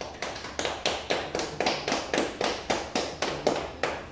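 A steady run of sharp taps, about four a second, that stops just before the end.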